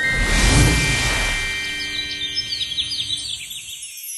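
Trailer soundtrack sound effects: a swelling whoosh under held ringing tones that fades away over a few seconds, with a flurry of quick bird chirps in the second half.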